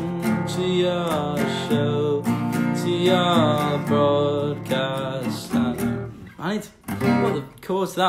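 Acoustic guitar strummed with a man singing along; the playing breaks up and gets quieter for a moment near the end.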